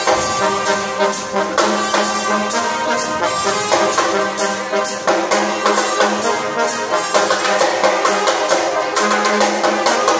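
Live brass band playing together, trombones and trumpets carrying the line over a steady drum-kit beat.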